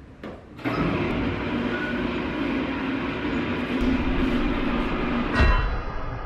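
Sliding driveway gate rolling open along its track, a steady rumble with a humming undertone, ending in a louder jolt near the end as it stops.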